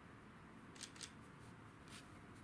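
Three short, sharp, faint clicks over near silence: two close together about a second in, a third near the end, as of a small object being handled.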